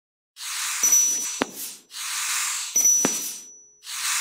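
Outro sound effects: two hissing whooshes about two seconds apart, each with a sharp click and a thin high ping riding on it.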